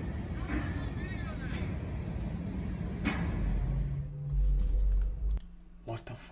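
Freight train cars rolling past a level crossing, a steady rumble and rattle heard through a phone microphone. A heavier low rumble comes in about four seconds in and cuts off sharply just past five seconds.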